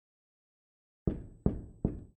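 Three knuckle knocks on a door, evenly spaced about 0.4 s apart, starting about a second in after silence.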